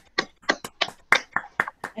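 Applause from several people clapping over a video call, coming through as separate, uneven claps, several a second, rather than a continuous wash.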